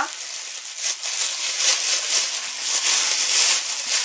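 Thin plastic bag crinkling and rustling as it is pulled open and peeled off a piece of raw pork by hand.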